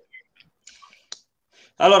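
A quiet pause holding a few faint rustles and one short, sharp click a little over a second in; a man's voice starts just before the end.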